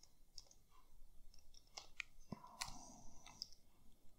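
Faint computer keyboard keys clicking in an irregular run as text is typed.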